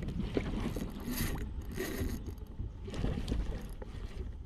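Water sloshing and slapping against a fishing kayak's hull, with wind on the microphone and a spinning reel being cranked, with scattered light clicks and a couple of brief splashy swells.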